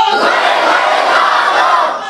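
A large audience crying out together, loud: a dense wash of many voices with no single voice standing out.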